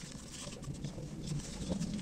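Cardboard cigarette packs being handled and folded, with light scattered rustles and taps. A low sound sits underneath and grows louder near the end.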